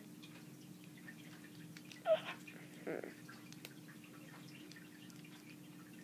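Faint clicks of a small plastic Transformers figure's arm joints being handled, over a steady low hum. A short pitched squeak about two seconds in is the loudest sound.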